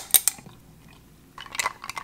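Ice cubes clinking and crackling in a glass as cold brew coffee is poured over them. There are two sharp clinks at the start, a quiet stretch, then a cluster of crackly clicks near the end.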